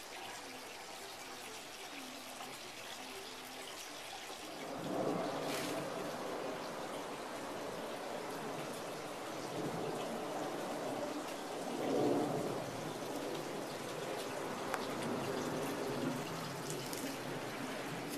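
Outdoor background noise: a steady hiss that grows louder about five seconds in, with indistinct lower sounds swelling now and then.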